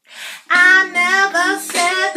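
A breath in, then a woman singing solo, her voice wavering up and down in pitch through the held notes.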